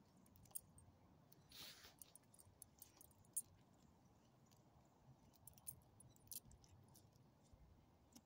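Faint, scattered clinks of a small dog's metal collar tags as it moves, with one short breathy rustle about one and a half seconds in.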